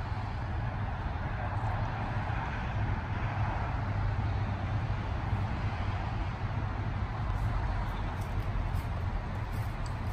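Steady road-traffic noise: a continuous low rumble with a hiss of passing cars.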